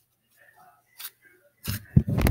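A recording phone or camera being handled and repositioned: a sharp click about a second in, then loud rubbing and bumping near the end.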